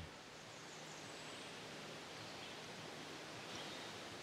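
Faint, steady background hiss of outdoor ambience, with no distinct sounds standing out.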